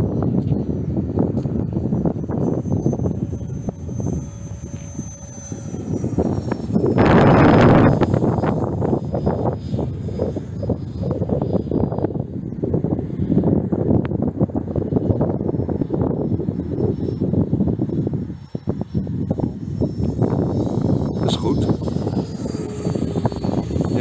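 The 90mm electric ducted fan of a radio-controlled Fouga Magister model jet in flight: a thin high whine that drifts up and down in pitch over a steady rush of noise, with a louder rush about seven seconds in.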